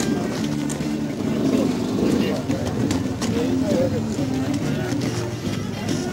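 Background music over a public-address system, mixed with people talking and the sound of dirt-bike engines around an enduro finish area, with no single sound standing out.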